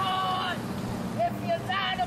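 Indistinct voices of a small outdoor group talking and calling out, too far off for the words to carry, over a steady low rumble.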